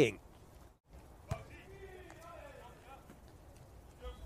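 Faint beach volleyball court sound: a ball struck once, a sharp smack about a second in, with distant players' voices calling faintly.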